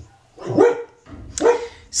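A pet dog barking twice, about a second apart.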